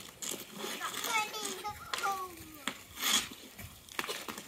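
A young child's high-pitched voice making short calls that rise and fall in pitch, without clear words, with a couple of sharp knocks and a brief hissing burst near the end.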